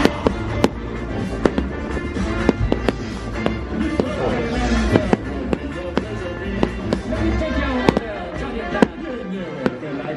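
Fireworks going off in a string of sharp bangs, roughly one or two a second at uneven intervals, the loudest near the end, over the show's soundtrack music playing through loudspeakers.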